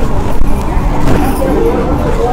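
Low rumbling handling noise on a clip-on microphone as a silk saree is unfolded and lifted against it, with voices underneath.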